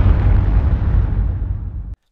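Explosion sound effect's deep, low tail, slowly fading and cutting off abruptly just before the end.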